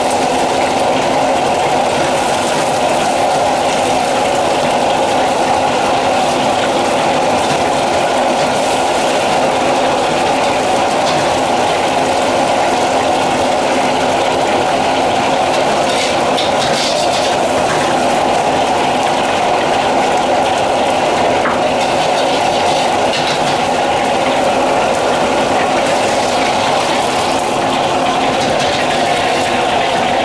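A high-powered gas wok burner running loud and steady, with beaten eggs sizzling in oil as a metal ladle stirs and scrapes them around the wok.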